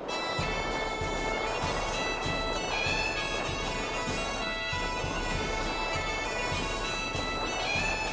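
Bagpipes playing a tune over steady held drones.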